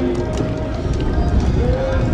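Nagara kettle drums beating in a street parade, under a steady mix of crowd voices and low rumble.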